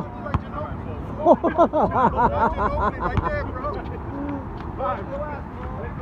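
A man laughing, a quick run of laughs over about two seconds, followed by a few short spoken sounds. A couple of sharp knocks stand out briefly.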